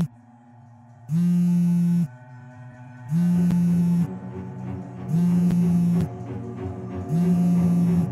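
Mobile phone on vibrate ringing for an incoming call, buzzing against the bed for about a second every two seconds, four times, with soft music underneath between the buzzes.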